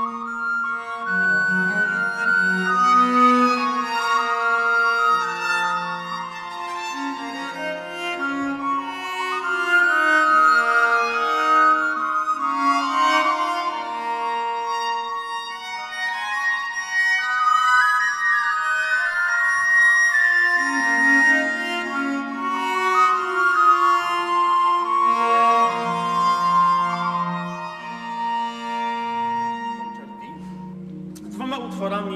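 An early-music ensemble on historical instruments playing a polyphonic piece: baroque violin and recorders over two bowed viols and harpsichord. Several sustained melodic lines overlap throughout, and the music dies away near the end.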